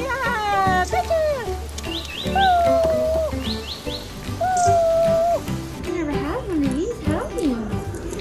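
Cockatiel whistling: held and sliding whistled notes with a few quick, high upward chirps, over background music. From about six seconds in, lower wavering up-and-down calls take over.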